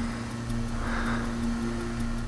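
A man breathing hard into a camcorder's microphone, one heavy breath about a second in, over a steady low drone.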